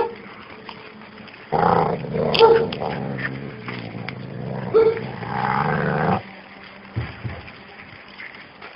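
Dogs growling as they wrestle in rough play: a continuous growl starts about a second and a half in and stops abruptly at about six seconds.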